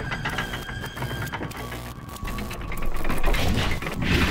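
Sound effects of an animated title intro: a fast run of mechanical-sounding clicks and ticks with thin steady tones behind them, growing louder near the end.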